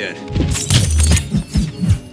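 Action-film fight soundtrack: music under a quick series of hits and crashes, with a low rumble about a second in.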